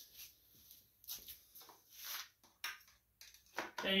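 Faint handling noise: a string of scattered light clicks and scuffs, with a slightly longer rustle about two seconds in.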